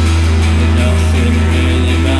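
Live band playing an instrumental passage of a dark post-punk song: an electric guitar is strummed over a held low bass note.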